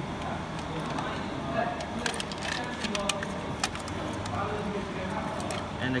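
Short plastic clicks and taps as a print head is handled and seated down into the printer's carriage, mostly in a cluster from about two to four seconds in, over a steady background hum.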